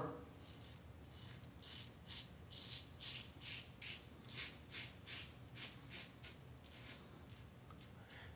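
A Parker 64S closed-comb double-edge safety razor with a Personna Prep blade scraping through two-day beard stubble. It makes a quiet rasp in short, repeated strokes, about two or three a second.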